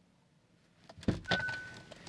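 A car's driver door latch clicks open about a second in, with a few more clicks from the door. A short steady electronic chime sounds for about half a second, the kind a car gives when the door is opened.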